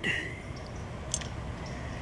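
Quiet steady background hiss with one faint click about a second in, from a finger pressing a button on a game feeder's digital timer.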